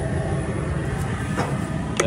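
Propane burners under a crawfish boiler running with a steady low rumble while the seasoned water boils.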